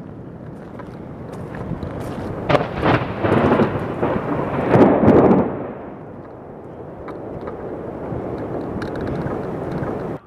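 Strong gusting wind of an approaching tornado rushing over the microphone, a rumbling noise that swells loudest twice near the middle.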